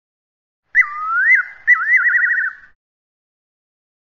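Two short whistled phrases, about a second each. The first dips and swoops back up; the second rises and ends in a fast warble.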